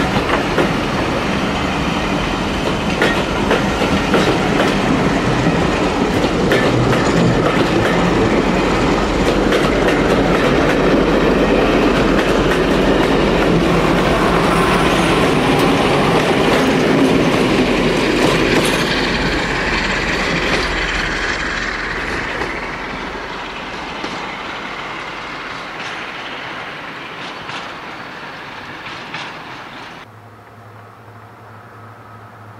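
Passenger train of coaches passing close by, its wheels clicking over the rail joints. A trailing diesel locomotive goes by about halfway through, when the sound is loudest, and the train then fades away into the distance.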